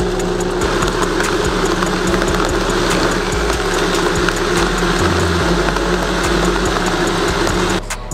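Vitamix blender running steadily as it purées roasted chiles, tomatillos, garlic and broth into a green sauce. The motor hums and the liquid churns, then it cuts off shortly before the end.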